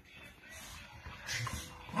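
Two dogs play-wrestling on a sheet-covered bed: scuffling and rustling of the bedding, with a short dog vocalisation about one and a half seconds in.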